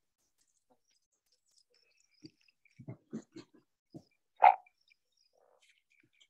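Sound from an animated film's soundtrack: a few soft low knocks, then one short, loud frog croak about four and a half seconds in.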